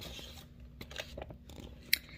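Faint rustling of a picture book's paper pages being handled, with a few small clicks and a sharper tick near the end.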